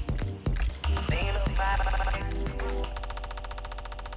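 Live electronic music from a modular synthesizer and laptop: deep bass hits under gliding synth tones, giving way about three seconds in to a fast, even buzzing pulse that fades down.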